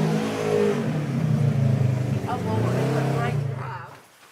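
Roaring engine of a Polaris side-by-side off-road vehicle revving close by, drowning out a woman's voice, then dropping away sharply near the end.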